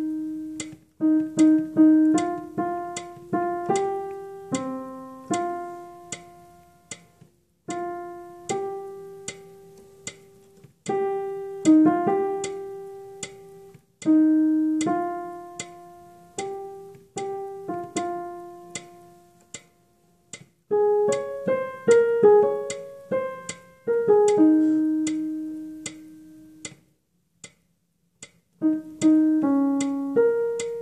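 Piano playing the alto line of a choral piece, one struck note at a time, each note ringing and fading. There is a quicker run of notes a little past the middle and a rest of about two seconds near the end.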